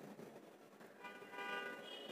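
Faint vehicle horn sounding one steady tone for about a second, starting about a second in.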